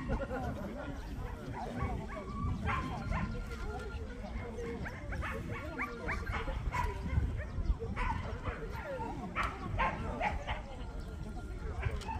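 Jindo dogs barking in short, scattered barks, several in quick succession near the end, over indistinct background voices.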